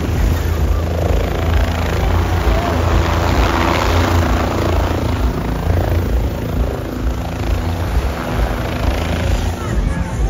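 Helicopter running close by: a steady low drone of rotor and engine with a rushing blast of air that swells about three to four seconds in.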